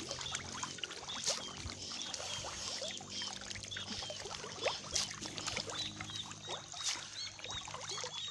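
Nile tilapia splashing at the pond surface as they feed on floating pellets: an uneven patter of small splashes and slaps over a steady wash of water. The fish are feeding less eagerly than usual.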